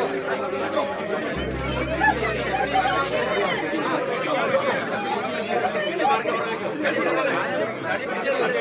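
Crowd of people talking among themselves, many voices overlapping into a steady murmur of chatter with no single speaker standing out.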